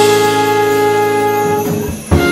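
Trumpet and trombone of a live jazz-fusion band holding one long chord, breaking off near the end.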